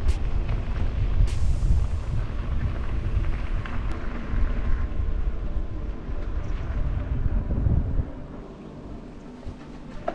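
Low rumble of wind buffeting a bike-mounted camera's microphone while a mountain bike rolls over a gravel lane and pavement; it drops away sharply about eight seconds in.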